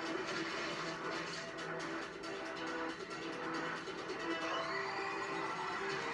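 Quiet dramatic score from a TV episode playing back, a few held notes over a low hum.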